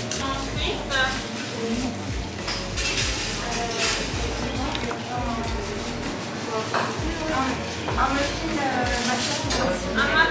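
Café ambience: background voices talking, with a few clinks of dishes and cutlery.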